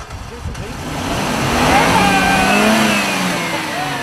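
Car-engine pass-by sound effect: a rush of engine noise that swells to a peak about halfway through, with its pitch falling as it goes past, then eases off.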